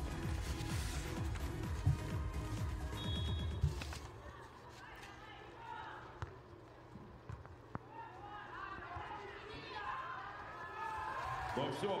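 Arena PA music with a heavy beat that cuts out about four seconds in as play begins. In the quieter stretch that follows, a volleyball is hit with the hands: a serve, then two more sharp slaps a second or so later, with voices in the background.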